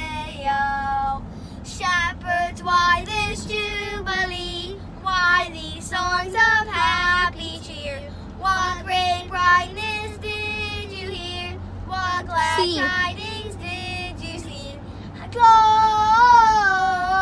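Young children singing a song in short phrases inside a moving minivan, over the steady low hum of the van on the road; the singing gets louder near the end.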